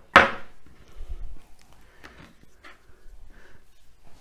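A single sharp knock, as a steel cake ring is set down on a wooden pastry board, followed by faint scattered taps and rustling as shortcrust pastry trimmings are gathered off the board.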